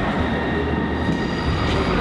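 CrossCountry Class 221 Voyager diesel-electric train standing at the platform, its underfloor diesel engines idling with a steady low rumble and a thin high whine; a second, higher whine joins about halfway.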